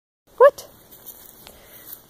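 A young dog gives a single short, high bark about half a second in, followed by faint rustling and a light click.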